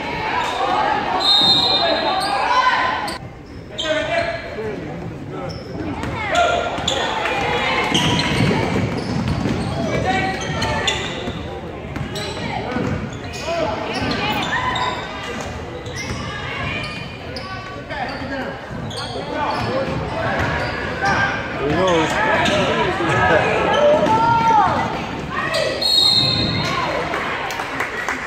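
Basketball bouncing on a hardwood gym floor during play, with players' and spectators' shouts and chatter, all echoing in a large gym.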